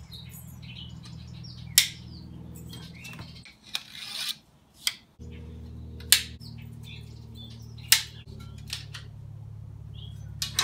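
Metal elements of a Yagi TV antenna being folded out and snapped into their locks, giving several sharp metallic clicks a second or two apart over a steady low hum.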